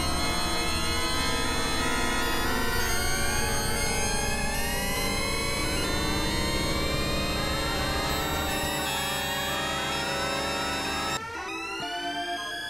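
Experimental synthesizer music: thick layers of steady drone tones with many short, overlapping rising pitch glides. About eleven seconds in it drops suddenly to quieter, sparser high rising sweeps.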